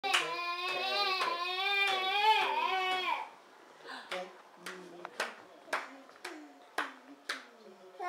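A high, wavering voice for about three seconds, then a steady run of hand claps, about two a second, with faint voice sounds between them.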